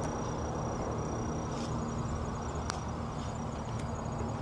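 Steady outdoor background noise: a low rumble with a faint, high-pitched insect trill that comes and goes, and one light click about two-thirds of the way through.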